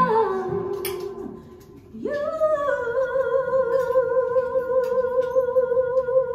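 A woman singing operatically, unaccompanied or nearly so. A phrase ends on a falling note that fades away, then about two seconds in she takes one long high note, held with vibrato almost to the end.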